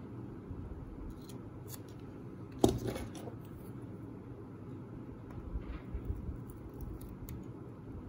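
Small handling sounds of a hobby knife and tweezers working at masking tape on a plastic model hull: faint scrapes and light clicks, with one sharp click about two and a half seconds in, over a steady low room hum.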